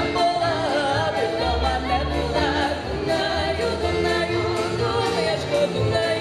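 Live Ukrainian folk band: several women's voices singing a melody together over violin, accordion, acoustic guitar, a large drum and a double bass plucking a steady low line.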